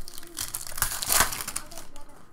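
Foil wrapper of a trading card pack crinkling and tearing as the pack is ripped open by hand. The crackle builds about half a second in, is loudest just after a second, and fades near the end.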